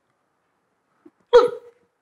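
One short, sharp vocal sound from a person, a catch of breath or scoff lasting about a third of a second, coming just over a second in; the rest is nearly silent.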